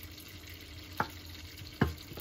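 A kitchen knife knocks twice on a cutting board as zucchini is cut into quarters, once about a second in and again near the end. Under it is a low steady hiss of butter and olive oil heating in a pan.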